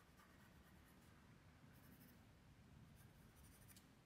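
Faint scratching of a graphite pencil on sketchbook paper as shading is added around a drawn eye, with a few small stroke sounds in the middle and near the end; otherwise near silence.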